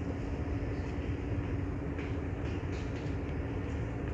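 Steady low rumble of a large room's background noise with a faint constant hum, and a few faint rustles and clicks.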